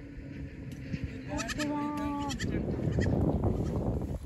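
A young goat kid bleats once, a single call of about a second starting a second and a half in, followed by a louder rustling noise.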